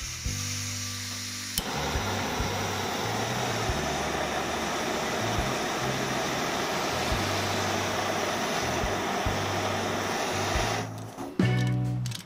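Primus P-115 Femme direct-jet canister gas stove: a faint hiss of gas as the valve is opened, a click as it lights about a second and a half in, then the burner running with a steady rushing hiss until it is turned off near the end.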